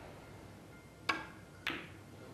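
Two sharp snooker-ball clicks a little over half a second apart: the cue tip striking the cue ball, then the cue ball striking the black as the double on the black is taken, over a hushed arena.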